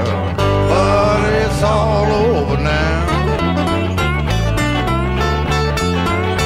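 Blues band playing an instrumental break: a lead guitar plays bending, sliding notes over a steady bass line and drums.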